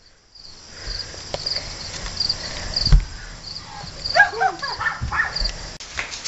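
Crickets chirping steadily, about two short chirps a second. A few dull thumps sound over them, the loudest about three seconds in, and brief faint voice sounds come around four seconds in.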